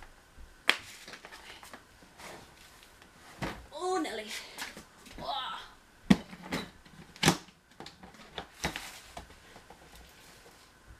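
Plastic storage bin being pulled down off a metal wire shelf: several sharp knocks and clatters of plastic against the wire, the loudest near the start and about six and seven seconds in. A voice is heard briefly in the middle.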